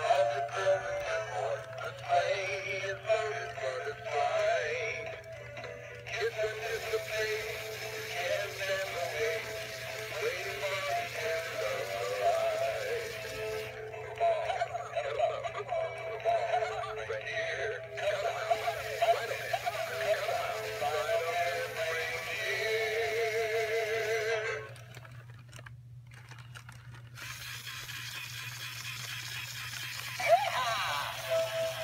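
Gemmy animated cowboy Santa figures playing their song through small built-in speakers: music with a singing voice, thin and lacking bass. It gets quieter about five seconds before the end.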